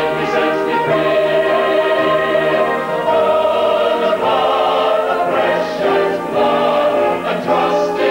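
Salvation Army brass band accompanying a mixed choir singing in held, sustained chords.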